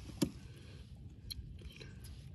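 Handling noise from a fish on a plastic measuring board: one sharp tap about a quarter second in, then a few faint ticks, over a low steady rumble.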